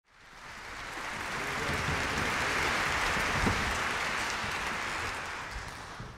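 Audience applauding, fading in over the first couple of seconds, holding steady, then dying away near the end.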